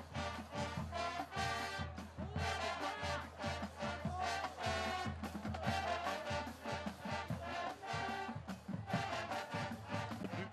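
High school marching band playing on the field, with brass carrying the melody over a steady beat of drums.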